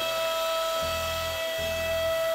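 CNC router spindle running at speed with a steady high-pitched whine as its bit cuts a recessed oval pocket into a hardwood board.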